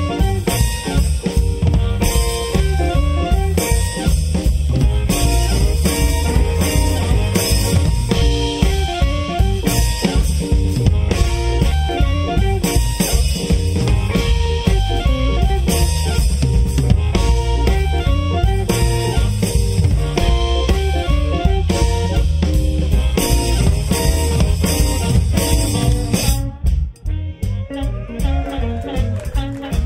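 Live electric blues band playing an instrumental harmonica solo: amplified blues harmonica over electric guitar, bass and drum kit. The band briefly drops out near the end before playing on.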